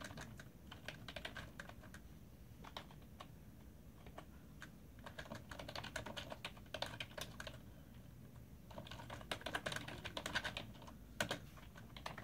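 Typing on a computer keyboard: quick runs of keystrokes in several bursts with short pauses between them, and a single sharper keystroke near the end.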